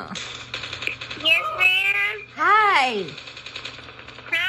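Phone shooter game sounds: short, rapid bursts of gunfire, with two long wordless voice sounds rising and falling in pitch over them, about a second in and again about halfway.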